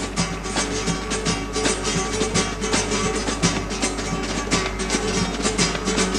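Carnival murga's instrumental music: strummed guitars over a steady, quick drum beat.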